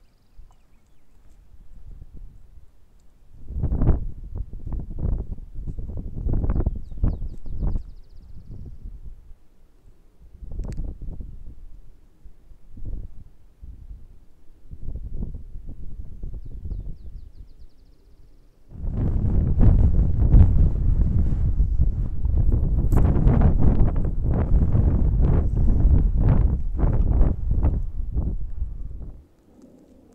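Wind buffeting the camera's microphone: gusts that come and go in the first half, then a sustained, louder rumble from a little past halfway that stops about a second before the end.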